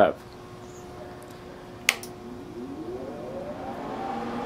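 A switch clicks once, then the inverter TIG welder's cooling fan spins up, a whine rising steadily in pitch and loudness as the machine is powered on.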